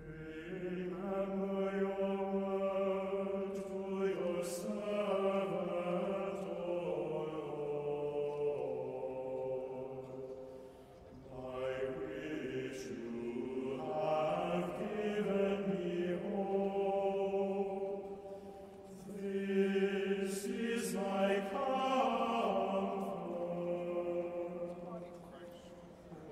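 Church choir singing a slow communion chant in long, held phrases, with short pauses between phrases about eleven and nineteen seconds in.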